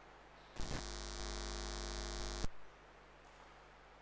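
Loud electrical buzz, like mains hum breaking into the sound system, lasting about two seconds; it cuts in with a few clicks just after the start and cuts off suddenly with a click. A faint steady hum runs beneath it throughout.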